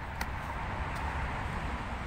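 Steady outdoor background noise with a low rumble, and two faint clicks about three-quarters of a second apart.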